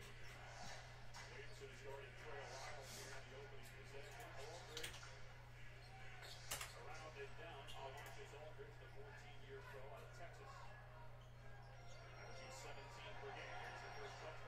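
Faint speech from a basketball game broadcast playing off-microphone on a phone, over a steady low electrical hum. A sharp click comes about six and a half seconds in.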